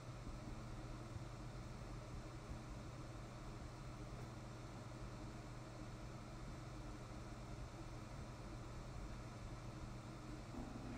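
Faint room tone: a steady low hum with even hiss.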